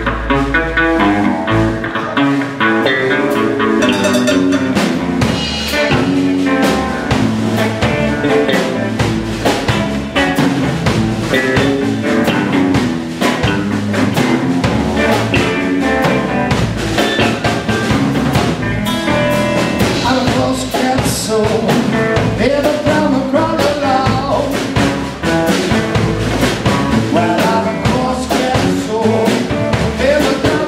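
Live blues band playing a rumba-blues number on hollow-body electric guitar, electric bass and drum kit, with a steady beat.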